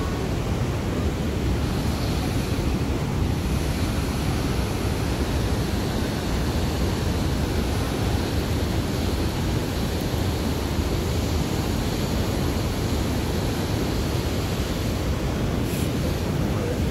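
Steady rushing roar of the creek water far below the suspension bridge, even and unbroken throughout.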